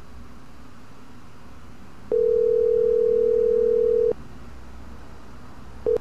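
Telephone ringing tone on an outgoing call: one steady ring of about two seconds, starting about two seconds in, while the called phone goes unanswered.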